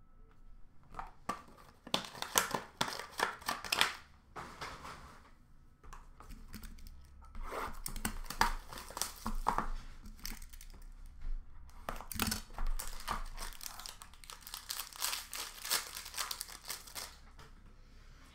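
Hockey card packs being torn open, their wrappers crinkling and ripping in several bursts with short pauses between.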